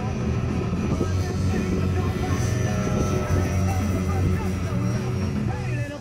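Music with a vocal over it, with the motor and propeller of an electric RC aerobatic plane (a 46-inch Yak 55 with a brushless outrunner and 13x6.5 APC propeller) mixed in as it flies, heard as a steady high tone.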